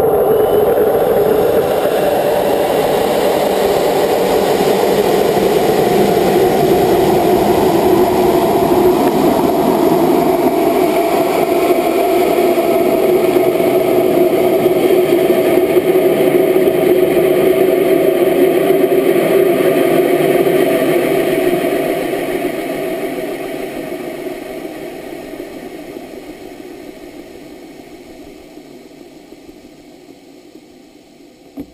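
Rocket engine running from liftoff, heard from a camera on the rocket's own body: a loud, steady rushing that begins abruptly at ignition, holds for about twenty seconds, then fades away gradually as the rocket climbs.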